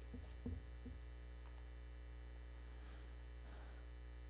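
Steady electrical mains hum from the sound system, with a few soft low thumps in the first second from a microphone being handled.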